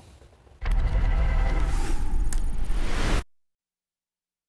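Newscast bumper sting marking the cut to a commercial break: a loud, bass-heavy swell of music and whoosh effect. It starts about half a second in, runs about two and a half seconds, then cuts off abruptly into silence.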